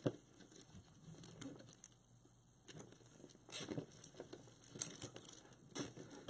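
Deco mesh rustling and crinkling as hands gather it and twist it into zip ties, with scattered light ticks; a few louder rustles come about midway and near the end.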